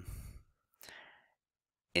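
The trailing end of a man's spoken word, then a soft breath drawn in by the speaker about a second in, between phrases; otherwise near silence.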